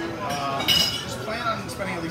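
A single sharp clink of glass about two-thirds of a second in, ringing briefly with several high tones.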